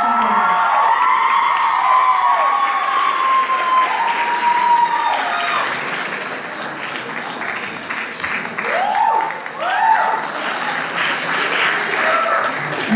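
Audience applauding steadily, with voices calling out and whooping over the clapping at the start and again about nine seconds in.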